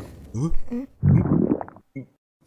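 Cartoon characters' wordless vocal mumbles and grunts, voiced gibberish rather than words, in two short stretches with a short blip near the end.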